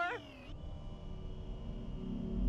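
Cartoon sound effect of a glass lift tube sinking into the ground: a falling whine that cuts off about half a second in, overlapping the tail of a short wailing vocal cry. After it comes a faint steady hum.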